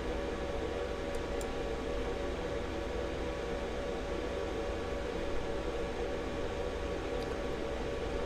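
Steady background hum and hiss, like a fan or air conditioner, with a faint steady tone over it and a couple of faint ticks about a second in.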